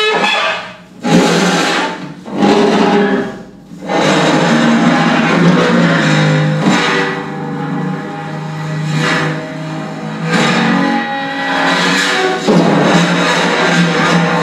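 Improvised percussion: small cymbals laid on snare drum heads and worked with a stick, giving dense, ringing metallic tones. Two sudden swells come about one and two and a half seconds in, then the ringing settles into a continuous layered sound that rises and falls.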